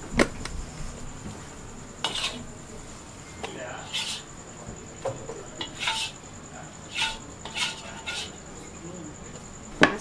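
Metal spatula scraping and clinking against a wok and an aluminium pot as cooked karipap filling is scooped from one to the other, in irregular strokes about once a second.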